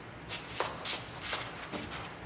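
Close rustling and shuffling from a person moving right beside the microphone: about five short, dry scuffs of clothing and movement.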